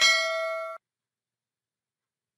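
Notification-bell ding sound effect of a subscribe-button reminder animation, a bright bell-like ring of several clear tones that cuts off abruptly under a second in.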